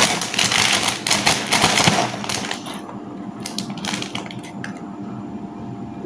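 Clear plastic bag crinkling and crackling as it is handled, densest in the first two seconds or so, then quieter with scattered crackles.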